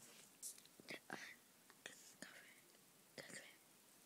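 Near silence, with a few faint, short whispered sounds.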